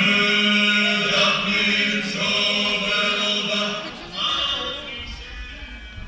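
Choir singing in several voices, with a low note held steady under the upper voices for the first two seconds. The singing moves in short phrases and fades out near the end.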